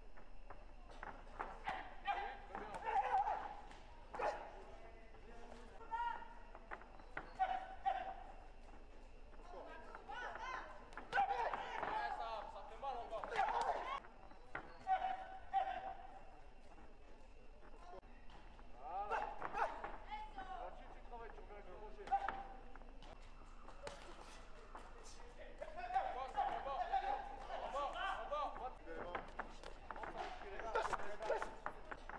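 Voices calling out in short spells across a large, echoing hall, with scattered sharp smacks of boxing gloves landing punches.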